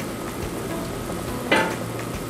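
Chicken broth with whole spices at a full rolling boil in a pot: a steady bubbling. A single short click about a second and a half in.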